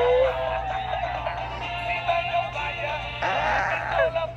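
Gemmy animated plush tiger playing its built-in song: a recorded tune with a sung vocal line while the toy moves, with a short noisy burst near the end.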